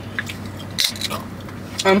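A few short, soft mouth clicks and smacks of eating and swallowing, the strongest about a second in.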